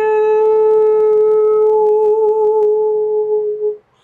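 A woman's voice holding one long sung note in light-language toning: a steady, clear tone that wavers slightly past the middle and stops shortly before the end.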